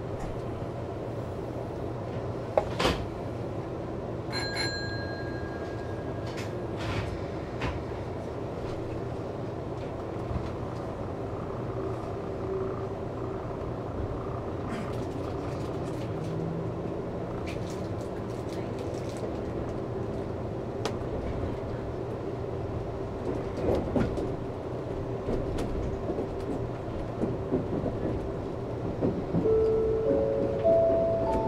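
Nankai 30000 series electric train pulling away from a standstill and accelerating, heard from behind the driver's cab: a steady running hum with scattered clicks and knocks of the wheels over rail joints and points, growing louder near the end as speed builds. A brief high beep sounds about four seconds in.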